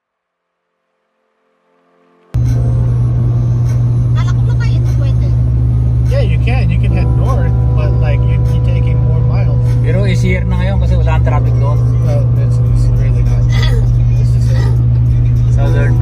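Road and engine noise inside a car cruising on a freeway: a loud, steady low drone that starts suddenly about two seconds in, with people talking over it for a while.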